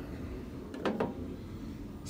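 The ribbed air-cleaner cover on a Miller Trailblazer 325's engine being handled and lifted off, with two light knocks a little under a second in.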